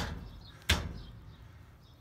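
Two sharp metallic clicks about 0.7 s apart as parts are handled at a car's front wheel hub.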